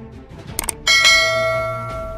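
Subscribe-button animation sound effects: a few quick clicks, then, about a second in, a bell chime that starts suddenly and rings on, fading slowly, over background music.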